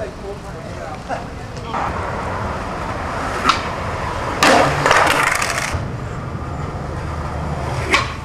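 Skateboard wheels rolling on concrete, then a sharp pop of the tail about three and a half seconds in. About a second later comes a loud, noisy crash of about a second as the board and rider come down at the bottom of the stairs.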